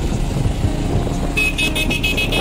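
Motorcycle engine running with wind noise on the microphone while riding. Near the end, a quick string of short, high-pitched beeps, about seven a second.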